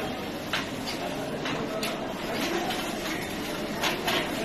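Background ambience of a large echoing hall with faint, indistinct voices, broken by a few sharp knocks or clicks, about four in all, the loudest near the end.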